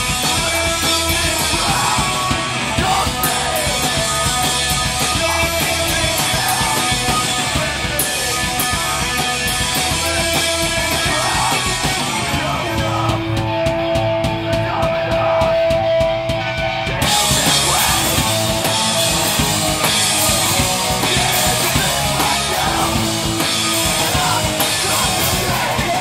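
Hardcore band playing live: distorted electric guitars, bass and a drum kit with cymbals. About halfway through, the drums and cymbals drop out for around four seconds while a guitar note rings on, then the full band comes back in.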